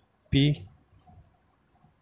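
A pen on notebook paper, with one short sharp click about a second in.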